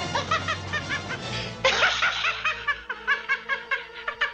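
A woman laughing in a rapid run of 'ha ha ha' over orchestral film music, with a sudden louder burst about one and a half seconds in.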